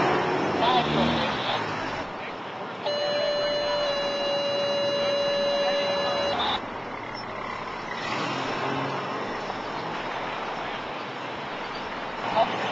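A vehicle horn held for about three and a half seconds on one steady note, which drops slightly in pitch partway through. It sounds over a steady background of running vehicle engines.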